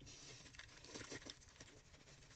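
Faint, irregular wet patting and rubbing of hands over a face lathered with foaming cleanser.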